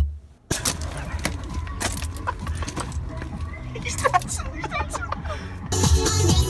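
The music cuts off, and after half a second of near silence come scattered clicks and knocks of a handheld camera being carried outdoors, with a short vocal sound about four seconds in. The music comes back just before the end.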